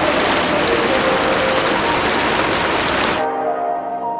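Floodwater rushing over a village pond's spillway, a steady hiss, cut off abruptly about three seconds in by background music with held notes.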